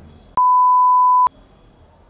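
A single steady, loud, high beep tone, edited into the soundtrack, starts abruptly about a third of a second in and cuts off just under a second later. It is a censor-style bleep: the room sound drops out completely while it plays.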